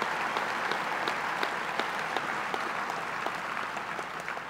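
Audience applauding: a dense patter of many hands clapping that tapers off slightly toward the end.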